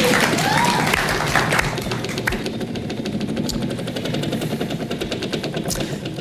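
Game-show prize wheel spinning, its pointer clicking rapidly against the pegs on the rim, the clicks spreading out as the wheel slows toward a stop. Audience voices call out over it in the first second or two.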